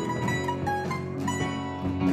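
A pop-rock band playing an instrumental passage, led by brightly picked and strummed acoustic guitars, one of them a twelve-string, over a drum kit.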